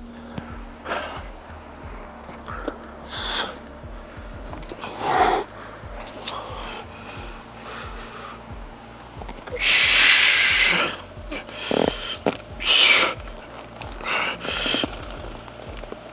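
A weightlifter takes several sharp, forceful breaths to brace himself under a heavily loaded barbell before a heavy bench press. The longest and loudest comes about ten seconds in.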